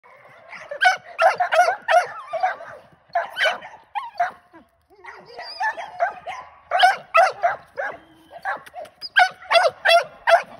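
Young game-bred pit bull-type dog on a chain barking over and over in bursts of quick, high barks, with short breaks about three and five seconds in.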